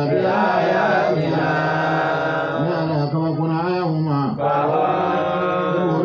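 A man's voice chanting Quranic verses in Arabic, one long melodic phrase after another with brief breaths between, through a microphone.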